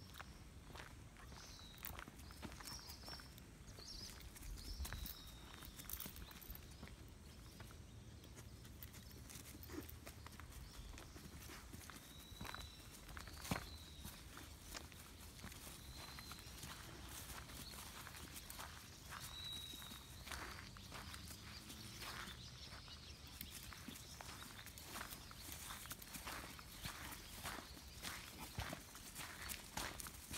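Faint footsteps and scuffs on a paved path, with short bird chirps in the background, several in the first few seconds and again around the middle.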